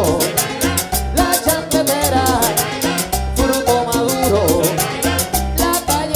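Live Latin dance orchestra playing a Colombian music medley: a repeating bass line and steady percussion beat, with accordion and melody lines over it.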